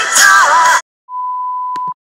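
Sung pop music cuts off abruptly under a second in; after a brief silence a single steady high beep, the 'please stand by' tone of a mock broadcast interruption, sounds for just under a second.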